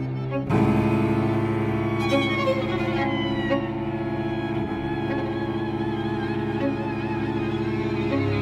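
String quartet music: violin and cello hold long sustained notes, with a high violin line gliding downward about two seconds in.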